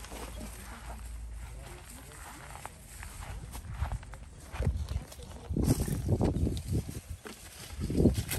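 Footsteps over dry leaves and mulch, irregular low thumps and rustles that grow louder in the second half, over a steady low rumble.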